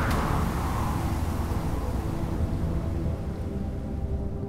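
Sound-effect rumble of a spaceship's engines, low and steady, with a hissing whoosh that fades away over the first few seconds.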